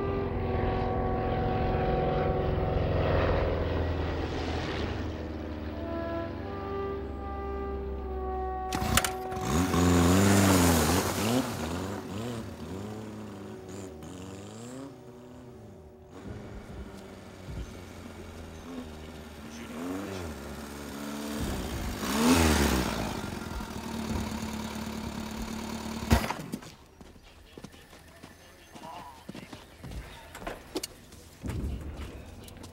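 Film soundtrack music mixed with engine-like vehicle noise. The noise comes in suddenly about nine seconds in and swells loudly twice, about ten and twenty-two seconds in, with its pitch rising and falling, then drops away near the end.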